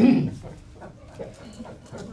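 A man's chuckling laugh at the very start, dying away within about half a second into quiet room sound with a few faint breathy traces.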